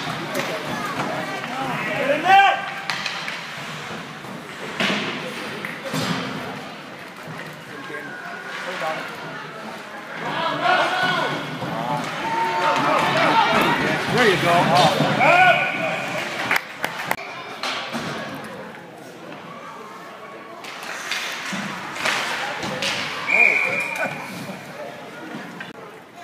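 Spectators at a youth ice hockey game shouting and calling out over the play, with scattered knocks of sticks and puck against the boards and ice. A referee's whistle gives two short blasts, one about 15 seconds in and one near the end.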